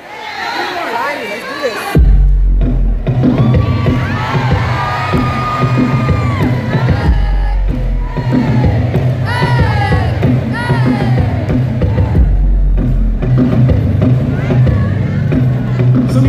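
Concert crowd cheering with high-pitched screams. About two seconds in, loud bass-heavy music starts over the sound system and plays on under the crowd's cheers.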